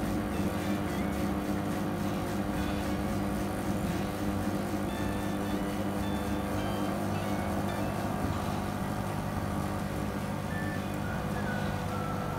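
Steady low electric hum from the Bubble Magus QQ1 protein skimmer's Rock SP600 pump, running just after start-up with its air intake held covered so that it primes and builds foam.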